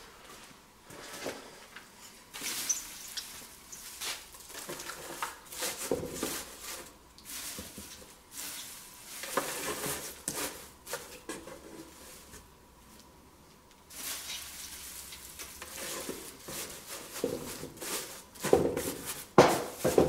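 Dry wood shavings rustling and crackling as they are handled and packed by hand into a wooden box, in irregular bursts with a short pause about two-thirds of the way through. A few louder knocks near the end.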